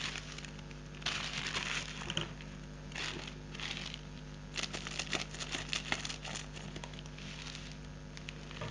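Plastic mailer packaging crinkling and rustling in irregular bursts as it is handled and opened by hand, with small clicks.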